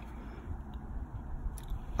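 Faint handling sounds of cross-stitch fabric and floss being moved in the hands, with a few soft ticks over a low steady hum.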